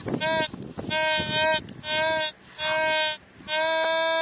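T2 VLF metal detector sounding its target tone: a series of short steady beeps as the coil sweeps over buried metal, then a longer held tone near the end.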